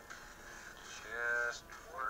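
A man's voice making one short, untranscribed sound about a second in, with faint hiss around it.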